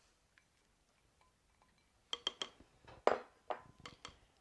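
Mixing bowls clinking against each other and the counter: a run of short, ringing clinks starting about halfway in.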